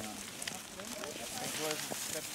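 Faint voices of people talking at a distance over a steady outdoor hiss, with a few small scattered clicks.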